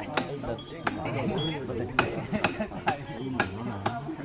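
Several voices overlapping, with the masters' scripture chanting mixed into people's talk, and about eight sharp clicks or knocks at uneven intervals.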